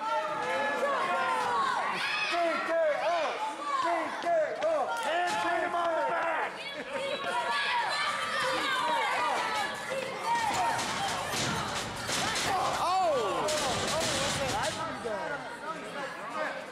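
Shouting voices from the wrestlers and ringside crowd throughout. In the last third comes a run of sharp smacks: strikes and bodies hitting the wrestling ring canvas.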